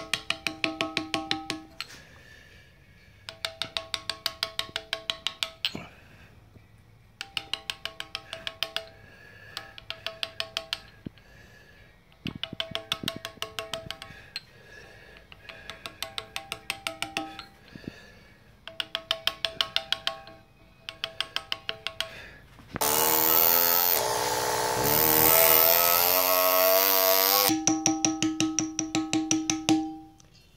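A brass mallet taps a steel carving chisel into Indiana limestone in quick runs of light, ringing taps, about seven a second, with short pauses between runs. About three-quarters of the way through, a loud rushing sound with a wavering whine lasts for about five seconds, then the tapping resumes.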